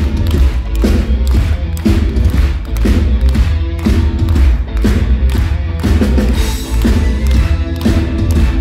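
Live band playing the instrumental intro of a classical-crossover rock song through a concert PA, with heavy bass and a steady thudding beat about twice a second.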